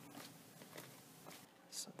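Faint handling noise: a few soft clicks as a silicone heart mold full of set gypsum is lifted off a mold riser of wooden sticks.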